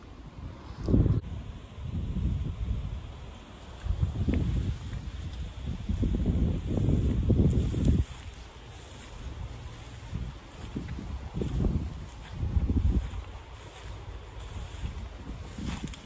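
Wind buffeting a phone's microphone in irregular low rumbling gusts, strongest in the middle of the stretch.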